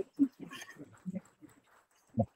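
A few faint, short voice sounds, murmured words or noises, in the first second or so, then near silence.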